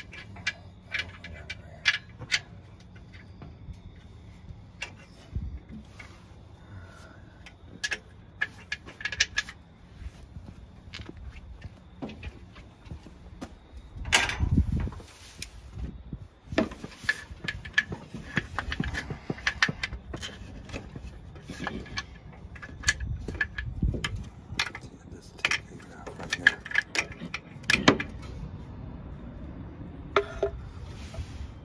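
Metal tools and parts clinking and knocking irregularly, with scattered sharp clicks throughout, as work goes on under the car at the engine and transmission. A louder clatter comes about halfway through.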